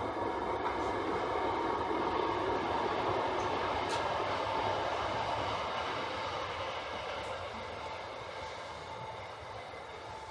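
A steady noise from a passing vehicle, loudest in the first few seconds and then fading gradually away.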